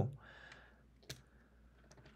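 A single sharp click about a second in, against quiet room tone, with a soft breath just before it.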